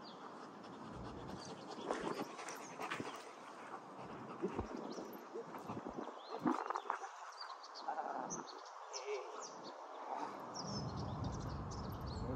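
German Shepherd and handler moving on artificial turf: irregular short scuffs and clicks of footfalls and leash, with a few brief sounds from the dog in the middle. A low rumble comes in near the end.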